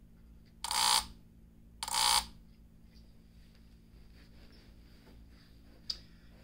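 Power transformer of a Polk RTi100 plate amplifier buzzing intermittently, in two short bursts about a second apart, over a faint steady hum. The amp never powers on, a fault later traced to a blown 4700 µF main filter capacitor rather than the transformer.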